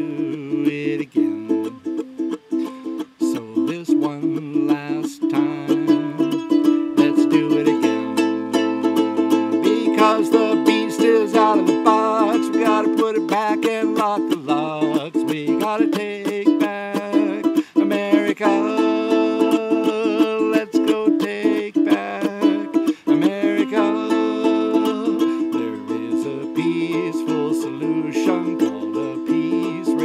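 Ukulele strummed steadily, with a voice calling out "hey" about halfway through.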